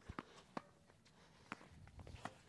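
A few faint, sharp knocks of a tennis ball off racket strings and the hard court during a soft slice drop-shot rally, spaced irregularly with quiet between.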